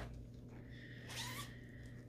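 Faint handling of a fabric zippered project bag, with a short zip and a thin high squeak lasting about a second.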